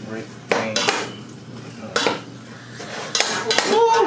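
Metal spatula scraping and clinking against a stainless steel pot as raw ground meat is broken up in it, with several sharp clinks scattered through and a cluster near the end.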